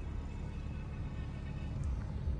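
Music playing quietly from the Toyota Hilux's touchscreen head unit, tuned to an FM radio station, heard inside the cab over a low steady rumble.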